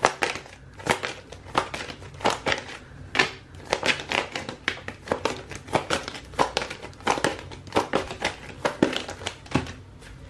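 A deck of tarot cards being shuffled by hand: quick, papery card-on-card flicks and slaps, about three a second, in an irregular run.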